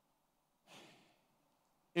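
A man's faint breath, one intake lasting about half a second, taken through the microphone just before he speaks again.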